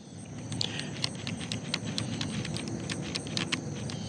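Daiwa Alphas Air TW baitcasting reel being cranked to retrieve line after a cast: a steady running sound with a rapid, even run of light ticks, several a second.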